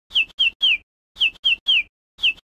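Bird-tweet sound effect: twice, a quick set of three short falling chirps, each set identical to the last.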